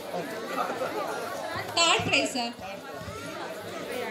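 Many people talking over one another in a large hall, with a brief, louder sound about halfway through.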